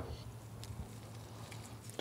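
Quiet background with a low steady hum and a faint hiss, and a few faint ticks.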